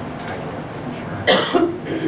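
A person coughing: a short, sudden cough about a second and a half in, in two quick bursts.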